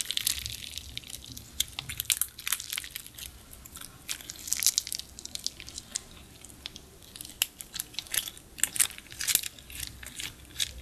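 Clear blue slime being stretched, folded and squeezed by hand, giving irregular sticky crackles and small pops. The crackles come thicker about halfway through and again near the end.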